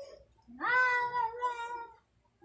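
A single long, high-pitched call that rises quickly at the start and then holds steady for over a second.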